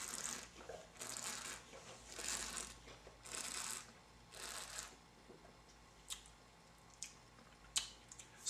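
A person breathing softly through the nose after a sip of red wine: about five faint, hissy breaths roughly a second apart, followed by a few short faint clicks near the end.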